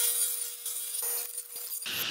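Table saw cutting a through dado groove along a birch plywood board: a steady hiss of the cut with a thin, even tone from the spinning blade.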